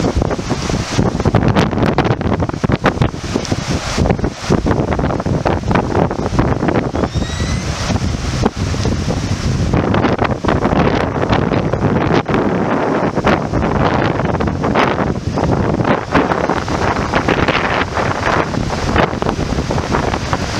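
Rushing water of a shallow, rocky mountain river running over rapids, with wind buffeting the microphone in gusts.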